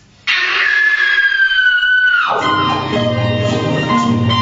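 Live music from an electric guitar through effects, starting abruptly and loud: a high tone slides slowly downward, then drops steeply about two seconds in into a steady, repeating pattern of lower tones over a bass line.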